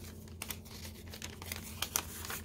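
A sheet of origami paper being folded and creased by hand: a string of short, crisp crinkles and rustles, sharpest near the end.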